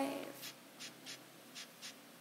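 A held sung note dies away at the start, then faint, short clicks keep a steady beat, in pairs about a third of a second apart.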